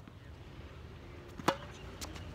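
Tennis racket striking a ball once, a single sharp hit about one and a half seconds in, with a brief ring from the strings.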